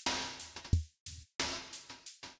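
Electronic drum-machine sounds from an Arturia Analog Lab preset, played from a MIDI keyboard: a few separate kick-drum and noisy snare-like hits, each dying away quickly.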